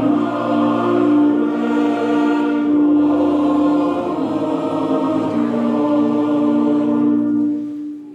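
A choir singing slowly in long-held chords, the sound cutting off just before the end.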